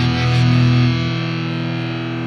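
Distorted electric guitar chord from a live rock band, held and ringing out; the lowest notes drop away about a second in.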